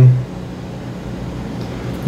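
The end of a man's spoken word, then a steady low hum of room noise, with no other event, until speech resumes.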